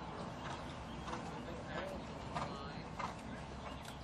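Faint hoofbeats of a cantering horse on arena sand, about one stride every two-thirds of a second, with light creaking.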